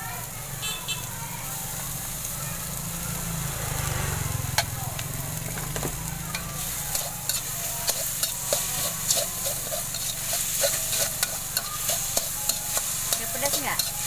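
Metal spatula scraping and clattering against a steel wok as bean sprouts and egg sizzle in hot oil. The strokes become quicker and sharper from about halfway through.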